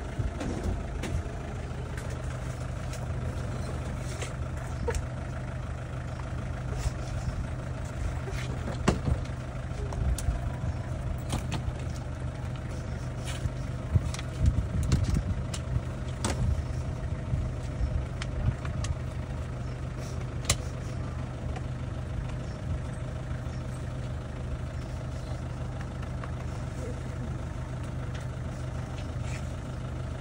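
A vehicle engine idling steadily, a low hum that runs throughout, with scattered small clicks over it.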